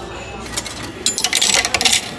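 Coins clattering and clinking out of a restaurant meal-ticket vending machine into its change tray, loudest and busiest in the second half. This is the change being paid out after a ticket purchase.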